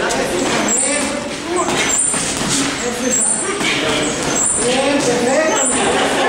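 Indistinct voices talking, steady throughout, with no clear words. A short high sound recurs about once a second.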